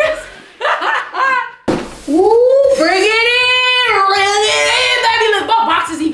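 Two people laughing and calling out loudly, with one long drawn-out vocal cry that bends up and down from about two seconds in until near the end.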